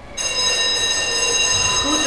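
A steady, sustained ringing tone of several high pitches at once, starting abruptly and holding unchanged, laid in as an editing sound effect.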